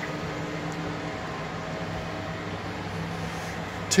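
Ajax AJL480 manual lathe running at a steady speed: a continuous mechanical hum with a few faint steady tones.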